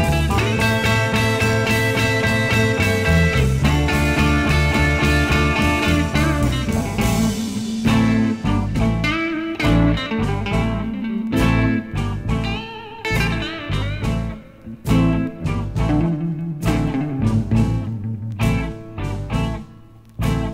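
Instrumental passage of a 1960s Chicago electric blues band recording with no vocals. The band holds a full chord for about the first seven seconds, then an electric guitar plays phrases of bent notes over bass and drums, broken by short stops.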